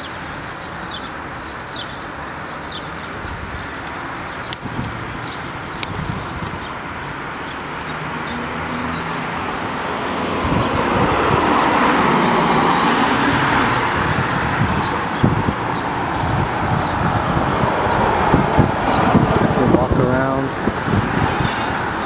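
Road traffic heard from the roadside: a steady noise of tyres and engines that swells to its loudest about twelve seconds in as a van drives past close by, then stays fairly loud as more traffic goes by.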